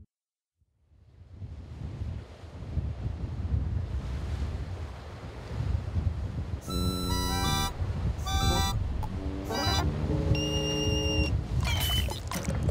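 Surf of heavy waves breaking on rocks fades in after a moment of silence and keeps on rushing. From about seven seconds in, a ship's siren sounds in several short blasts of chord-like tones over the surf.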